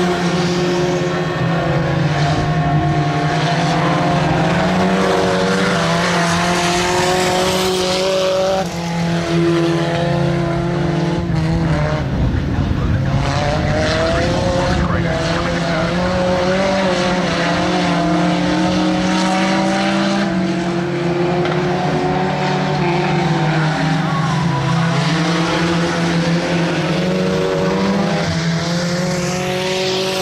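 Speedway saloon cars racing on a dirt oval, several engines running hard at once, their pitch rising and falling as the drivers go on and off the throttle.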